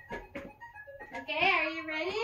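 A few light knocks, then a child's high, drawn-out voice with a sliding pitch starting a little past halfway.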